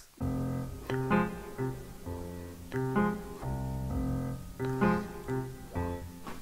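Quiet piano music: chords struck in short groups of two or three and left to ring between them.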